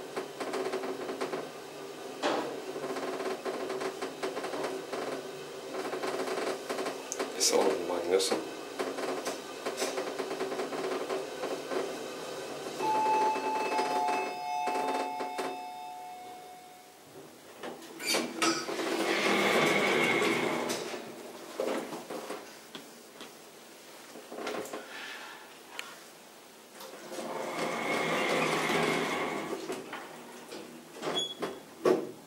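Passenger lift car running up with a steady motor hum and a few clicks, then a two-tone chime, higher note then lower, as it arrives at the floor. Its automatic doors then open with a whirring rush about 18 seconds in and close again near the end.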